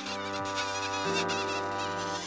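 A steady buzzing drone with many overtones, its lower notes shifting about a second in.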